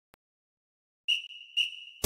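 Two short high-pitched tones about half a second apart, each starting sharply and then fading, leading into an intro jingle.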